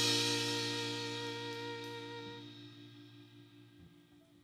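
A live country band's final chord rings out on acoustic guitar and strings, with a cymbal wash over it, and fades away slowly as the song ends.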